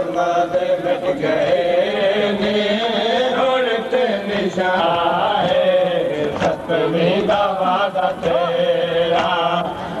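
Several voices chanting a mourning lament (nauha), long held lines overlapping one another, with occasional sharp knocks mixed in.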